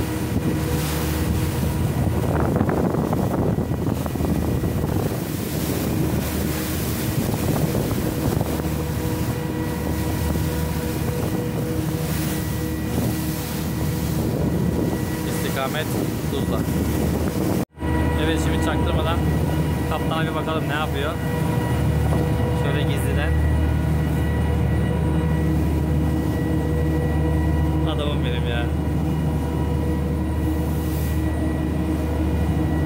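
Twin Yuchai marine diesel engines of a small steel boat running steadily under way, with wind buffeting the microphone. After a brief dropout about two-thirds of the way in, the wind eases and the engines' steady hum comes through more clearly.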